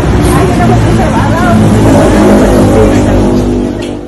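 Loud street traffic with a steady low vehicle rumble, and people talking over it. It fades out near the end.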